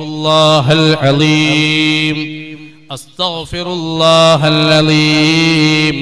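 A man's voice chanting a dhikr in long, held, melodic phrases into a microphone: one long phrase, a brief break about halfway, then a second long phrase.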